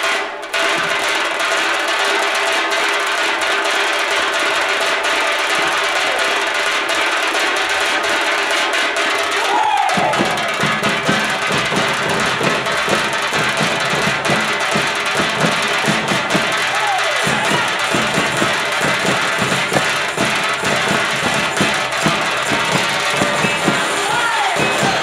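Minangkabau tambua drum ensemble: for the first ten seconds only steady held tones are heard. About ten seconds in, the big barrel drums and hand cymbals come in together, playing a fast, dense rhythm.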